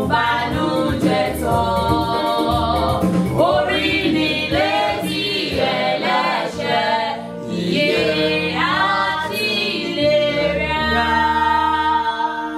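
Gospel singing: voices holding long, drawn-out notes over a low, steady accompaniment.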